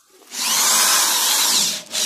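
Orange cordless drill driving a drywall screw into gypsum board. The motor runs hard for about a second and a half, then gives a short second burst near the end.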